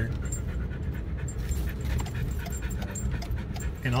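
A dog panting hard in a steady run of quick breaths inside a moving car's cabin, over the car's low road and engine rumble.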